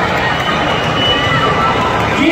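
Crowd of spectators in a hall, a dense babble of many voices talking at once.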